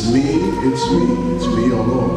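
Slow, unaccompanied gospel hymn singing led by a man's voice on a microphone, with long held notes that glide between pitches.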